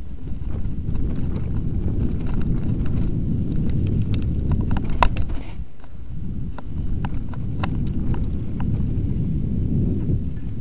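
Norco Sight Alloy full-suspension mountain bike riding fast down a dirt trail, heard from a rider-mounted action camera: a steady low rumble of tyres on dirt with frequent clicks and knocks as the bike rattles over roots and stones. The sharpest knock comes about five seconds in, and the rumble eases for about a second just after it.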